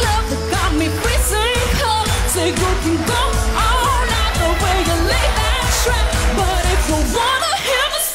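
A woman singing a pop song over a backing track with a heavy bass beat, her voice bending through wavering runs. The bass drops out shortly before the end.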